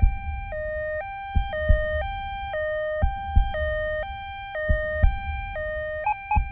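Two-tone ambulance siren sound effect, switching between a high and a low note every half second, over a heartbeat of paired low thumps about every second and a half.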